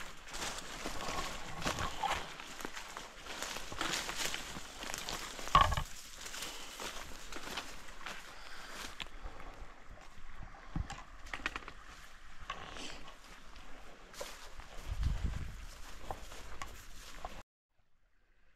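Footsteps crunching and brush and branches swishing and snapping as a hiker pushes through undergrowth to get around a fallen-tree blowdown, with a heavy thump about five and a half seconds in. The sound stops abruptly near the end.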